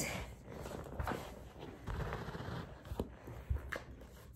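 Soft rustling and a few light knocks as a person shifts her body on the floor close to the microphone.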